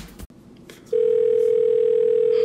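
Telephone ringback tone heard through the caller's phone while waiting for the other end to pick up: one steady tone with a slight warble, starting about a second in after a faint click.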